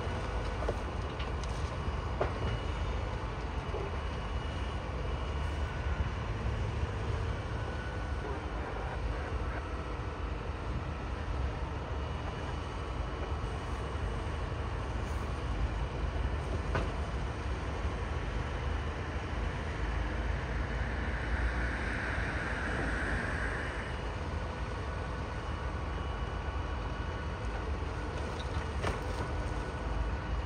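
Diesel engine of a Doosan wheeled hi-rail excavator running steadily with a low rumble while the machine works on the track. A short hiss comes up about two-thirds of the way through.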